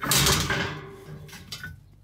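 Metal grill grate set down into a Big Green Egg kamado over a metal drip tray: a sharp metallic clatter at the start that fades out over about a second.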